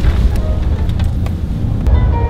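Low, steady rumble of a truck on the move, with wind buffeting the microphone and a few short knocks.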